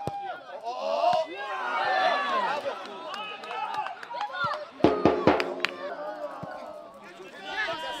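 Men's voices shouting and calling across an outdoor football pitch, with a cluster of sharp knocks about five seconds in.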